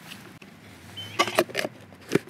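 Camping stove pots being handled and their plastic base covers fitted on, giving a few light plastic-and-metal clicks and knocks, with two or three sharp clacks a little past the middle.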